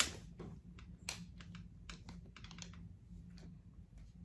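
Hands rummaging through a handbag: irregular light clicks, knocks and rustles of small items being moved about, the sharpest knock right at the start, over a steady low hum.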